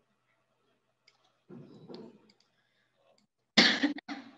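A person coughs sharply near the end, after a quieter throat noise about a second and a half in; a few faint clicks sit between them.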